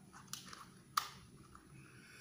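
A few light clicks and taps from handling a small plastic bubble-blowing tube, the sharpest about a second in, followed near the end by faint blowing into the tube.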